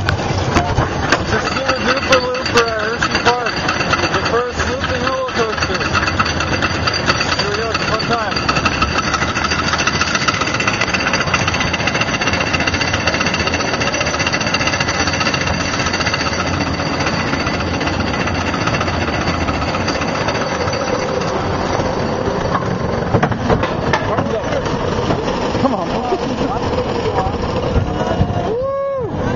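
The Sooperdooperlooper steel roller coaster train rattling and clattering along its track, heard continuously and loudly from a seat on the train. Riders' voices and shouts are mixed in, most clearly in the first few seconds.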